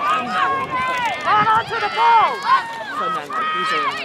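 Several high-pitched voices shouting and calling over one another, with long held and falling cries but no clear words.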